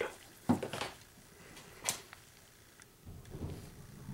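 A handheld OBD-II scan tool being handled: a short knock about half a second in, a sharp click near two seconds, then soft low rumbling.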